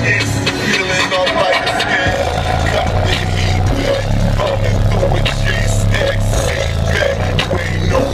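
Hip-hop music played loud through a car audio system, heard inside the truck's cab. Deep sustained bass notes come from a 15-inch Sundown Audio ZV4 subwoofer. The bass thins out briefly about a second in and returns strongly about two seconds in.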